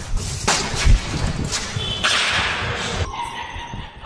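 Handling noise from a handheld camera on the move, with footsteps and a few sharp knocks; the loudest knock comes about a second in, and a rushing hiss follows between two and three seconds in.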